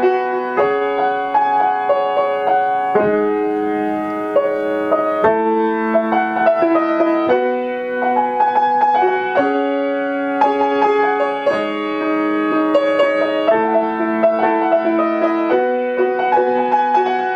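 Acoustic grand piano played solo: a pop-song arrangement of melody over steady broken chords, the harmony shifting about every two seconds.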